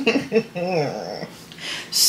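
A woman laughing behind her hand, a few short pitched voiced sounds and a falling glide in the first second, then quiet.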